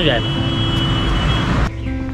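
Street traffic noise from a motor vehicle going by close, a loud even rush that cuts off abruptly near the end.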